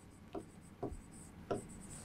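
Marker pen writing on a whiteboard: a few short, quick strokes with a faint squeak.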